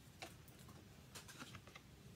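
Faint scattered clicks and taps of a deck of tarot cards being shuffled by hand, against near silence.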